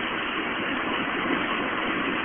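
Steady engine and road noise heard inside a Honda car's cabin while it is being driven.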